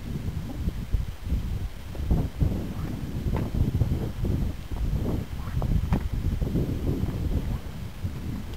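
Wind buffeting the microphone in an uneven low rumble, with a few faint crunches of footsteps on gravel as the camera is carried forward.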